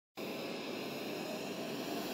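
Twin-engine jet airliner's turbofan engines running on the runway: a steady rushing noise with a faint high whine, cutting in just after the start.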